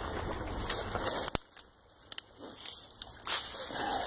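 Dry grass, twigs and dead leaves rustling and crackling as someone moves through brush, with one sharp click about a second in.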